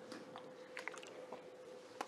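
Quiet room tone with a faint steady hum and a few soft, short clicks around the middle.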